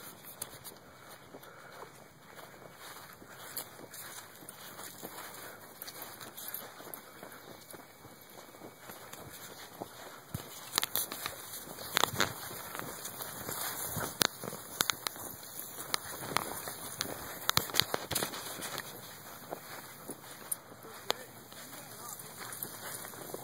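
Outdoor background noise with scattered short clicks and knocks, which come thicker from about halfway through.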